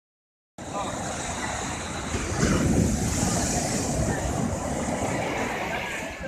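Sea surf breaking and washing up the beach, a steady rush that swells louder about two seconds in.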